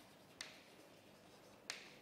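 Chalk tapping on a chalkboard during writing: two sharp ticks a little over a second apart, against near silence.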